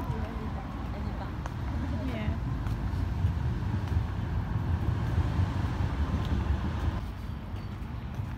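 Outdoor park ambience: a steady low rumble, heaviest in the middle and easing near the end, with faint distant voices.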